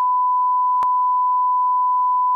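A steady, high-pitched censor bleep: one unbroken pure tone laid over the speech, with a faint click a little under a second in.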